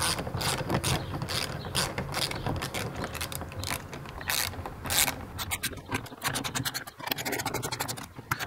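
A hand ratchet clicking in repeated strokes, with a fast run of clicks near the end, as the screws of a door lock's mounting plate are tightened in stages.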